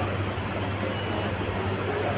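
A steady low hum under a background of even noise, with no clear single event.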